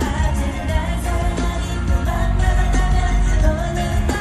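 Live K-pop concert music: a woman singing held, bending notes over a loud backing track with heavy bass, picked up from among the audience.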